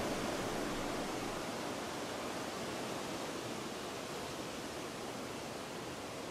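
Steady rushing wash of ocean surf at a coastal sea cave, even and unbroken, fading very slightly over the few seconds.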